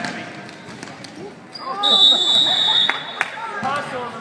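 Referee's whistle blown in one long steady blast about two seconds in, lasting over a second, over spectators shouting and a basketball bouncing on a hardwood gym floor.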